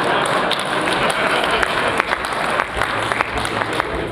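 Audience applauding: dense, steady clapping with scattered sharper individual claps.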